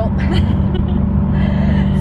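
Steady low road and engine noise inside the cabin of a moving car, with a woman laughing about a second in.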